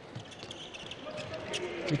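Arena crowd murmur with a handball bouncing on the wooden court floor as play goes on. Faint voices call out in the hall.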